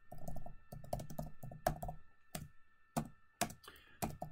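Typing on a computer keyboard: a quick, irregular run of key clicks with a few sharper, louder strikes among them.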